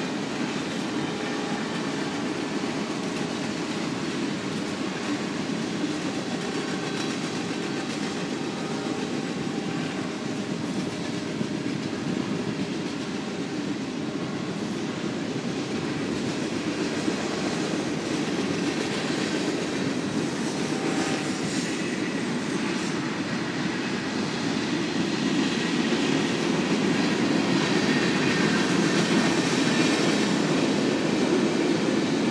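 Powered parachute's engine and propeller droning steadily overhead, slowly growing louder over the last third.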